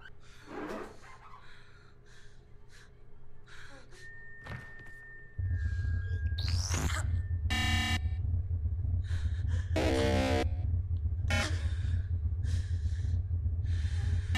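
Horror-film soundtrack with digital glitch effects: scattered clicks and a faint high tone, then a loud low drone that cuts in suddenly about five seconds in and holds, with buzzy glitch bursts and a rising sweep over it.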